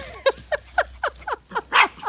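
A small dog yapping at a sheep's heels: a quick run of short, high yips, about four a second, each dropping in pitch, with a louder, harsher one near the end.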